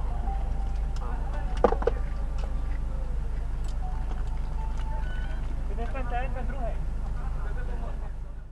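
A steady low rumble with faint voices over it, and a brief wavering voice about six seconds in.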